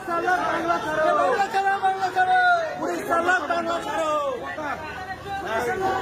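Several people talking over one another in a small crowd, with no other clear sound.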